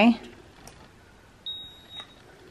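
Handheld digital ear thermometer giving a single high beep about one and a half seconds in, lasting about half a second, the signal that the temperature reading is done.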